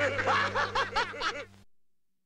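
A person's rapid, high-pitched giggling, a quick run of rising-and-falling notes over a low steady hum. It cuts off abruptly about one and a half seconds in.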